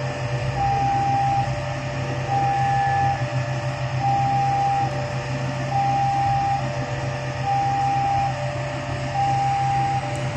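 Level crossing warning alarm sounding a repeating two-tone signal, a higher tone alternating with a lower one, under a second each and about every 1.7 s. Beneath it, a diesel-electric locomotive's engine hums steadily.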